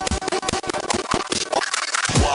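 Electronic dance music at about 144 beats a minute, mixed live on a DJ controller, with a steady kick drum; in the last half second the kick and bass drop out for a short break.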